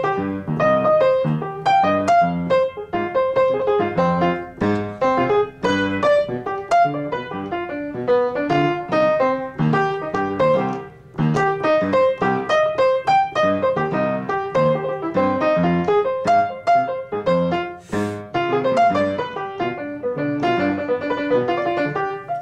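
Piano played solo with both hands: a continuous stream of quick arpeggiated chord notes over held bass notes, working through a chord progression, with a brief lull about eleven seconds in.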